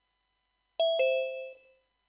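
A two-note falling "ding-dong" chime: a higher note, then a lower one a fraction of a second later, ringing out and fading within about a second.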